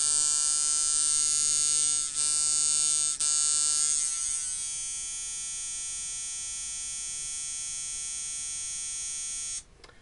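Ciferri Walker coil tattoo machine running at 6 volts, a steady electric buzz at about 150 cycles per second. It dips briefly twice, turns quieter and thinner about four seconds in, and cuts off shortly before the end.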